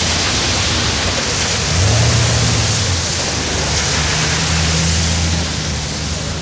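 Cars of a limousine motorcade pulling away: a low engine hum that swells twice, over a steady hiss.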